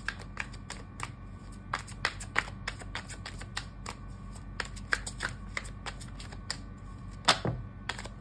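A tarot deck being shuffled by hand: a steady run of irregular card clicks and flicks, with one louder click near the end.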